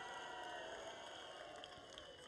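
Faint crowd noise: many distant voices blended together, with no single voice standing out.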